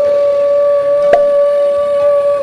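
A woman's singing voice holding one long, steady note over a sustained note from the backing music, with a brief click a little past the middle.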